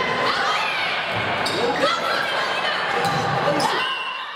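Volleyball rally in an echoing gymnasium: a few sharp smacks of the ball being hit, among players' calls and shouts.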